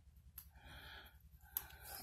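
Faint snips of small scissors cutting a paper sticker: a click about a third of a second in and another near the end, with a soft breath out between them.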